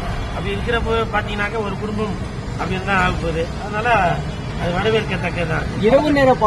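A man speaking Tamil into press microphones, in a continuous run of speech, over a steady low background hum.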